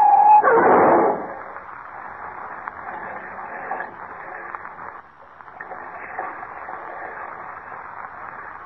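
Radio-drama sound effects of a car crash on an old, muffled 1940 broadcast recording. A tyre skid squeal is cut off about half a second in by a loud crash, followed by a lower steady rushing noise as the car plunges into the river.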